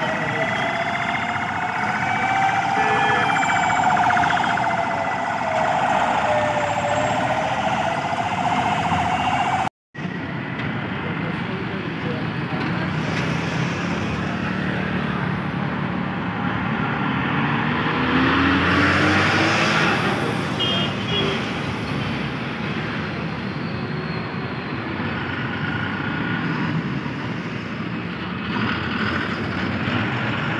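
Road traffic noise with a siren wailing slowly up and down over the first ten seconds or so. After a sudden cut, vehicle engines and passing traffic go on.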